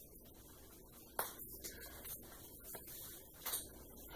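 Faint handling of Uno playing cards: soft rustles and taps as cards are held and laid down on a floor mat, with a sharp click about a second in and another at about three and a half seconds.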